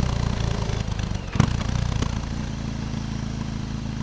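BMW motorcycle engine running steadily at low road speed, heard from the rider's seat, its note easing off slightly about halfway through; a single sharp click about one and a half seconds in.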